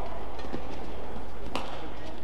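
A badminton racket strikes a shuttlecock once, a sharp crack about one and a half seconds in, over the steady low hum of an arena.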